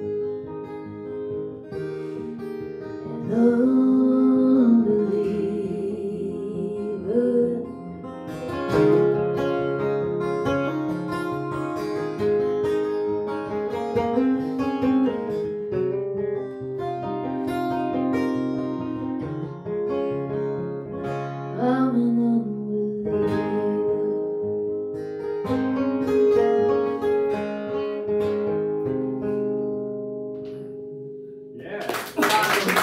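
Two acoustic guitars played together in an instrumental passage of a country song, a mix of strumming and picked melody, the music tapering off near the end as the song finishes.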